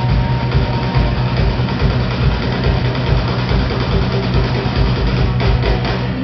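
Live rock band playing: electric guitars, bass guitar and drum kit together, with a steady, heavy bass line and no vocal line.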